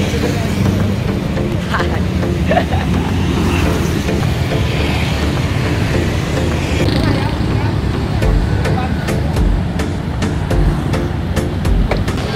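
Busy street traffic of motorbikes and cars passing, a steady low rumble.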